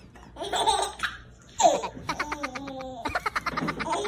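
Baby giggling: a short burst of laughter about half a second in, a falling squeal, then a run of quick, short laughs from about two seconds in.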